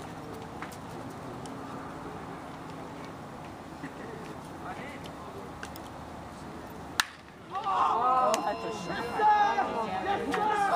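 A baseball bat cracking once against a pitched ball about seven seconds in, followed at once by spectators shouting and cheering the hit. Before the hit, only a low murmur of voices from the stands.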